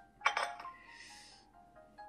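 A spoon clinks against a china teacup, one bright clink about a quarter second in, followed by a brief soft hiss. It sits over a slow, sparse melody of single held notes from the background music.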